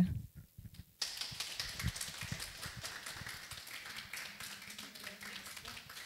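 Audience applauding, starting suddenly about a second in and slowly dying down.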